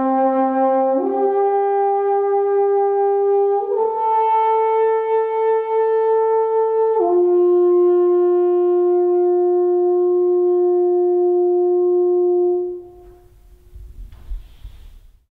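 Alphorn played solo: the closing phrase of a tune in four long held notes, stepping up twice and then down to a final note held about six seconds that stops near the end.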